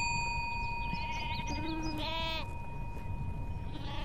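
A single struck small bell ringing on after its strike and fading slowly. About two seconds in, a brief wavering animal call sounds over the ring.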